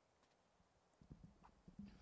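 Near silence broken in the second half by a few faint, short, low knocks and rustles: handling noise from a handheld microphone being passed from one man to the next.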